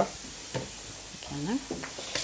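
Lamb skewers sizzling steadily on a hot indoor grill, with a short bit of voice about one and a half seconds in.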